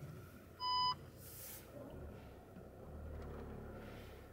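A single short electronic beep from the car, one clear high tone lasting about a third of a second just under a second in. It sits over a low engine and cabin rumble, with a brief hiss shortly after.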